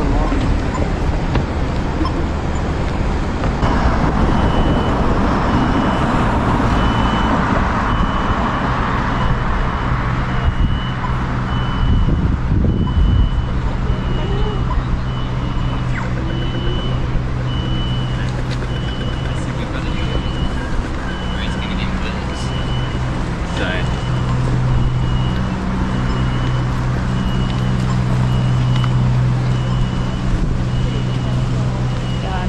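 City street traffic: vehicles running past and a low steady engine hum, with a short high-pitched beep repeating about once a second.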